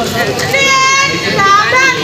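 A girl shouting a high, drawn-out drill call that starts about half a second in and bends upward in pitch near the end, over other children's voices.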